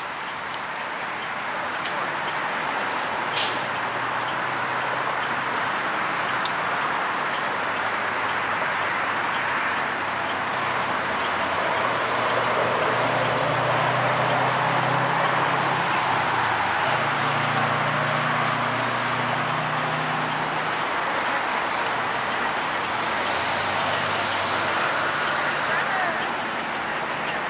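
Metro Local city bus idling at the stop, a steady running noise, with low humming tones that swell and fade between about twelve and twenty seconds in.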